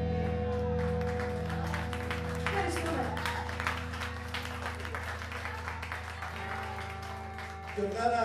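A live rock band's final chord ringing out and slowly fading, with the audience clapping over it.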